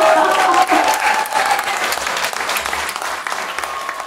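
Audience applauding at the end of a live band's song, with dense clapping that gradually dies away.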